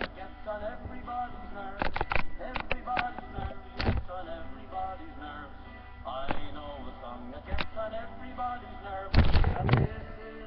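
A girl's voice singing, too unclear for the words to come through, broken by knocks and bumps on the microphone, with a loud jumbled burst near the end.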